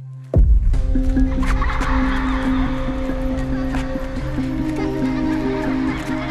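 A sudden loud din starts about half a second in: a deep rumble, several held steady tones and a harsh jumble of noise, over music. It is the kind of loud noise a child covers her ears against.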